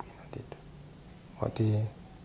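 A man speaking softly in Chichewa. His words trail into a short pause, and a brief spoken syllable comes near the end.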